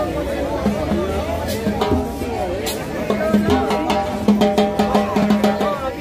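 A crowd chatters while a street band's drums and percussion play. A few single hits come in the first half; from about halfway there is a quick run of stick and drum strikes over a held low note.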